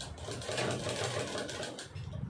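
A black Sandeep sewing machine stitching through a woven plastic rice sack: a fast, even run of needle strokes, loudest in the middle.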